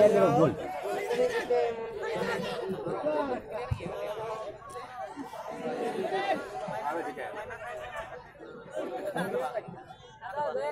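Spectators chattering, many voices talking over one another close by, with laughter about four seconds in.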